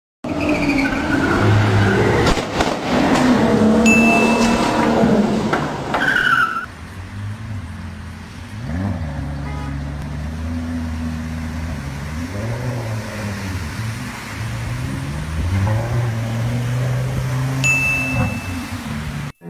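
For the first six seconds, a loud, busy mix of sounds with a short high tone about four seconds in. Then a Lamborghini's engine runs and revs repeatedly through floodwater, its pitch rising and falling.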